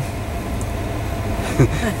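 Steady low rumble of a vehicle's engine and tyres, heard from inside the cab while driving slowly in traffic.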